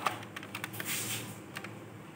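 Hard plastic toy belt buckle, a Bandai DX IXA Driver, being handled and turned over on a hard floor: a sharp click right at the start, then a run of small plastic clicks and taps with a brief rustling scrape about a second in.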